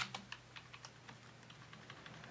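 Faint clicks of computer keyboard keys being pressed, several in quick succession at first, then a few more spaced out.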